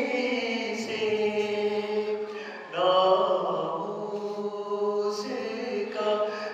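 A man chanting devotional Urdu poetry in long, held melodic phrases, with a new, louder phrase starting about three seconds in.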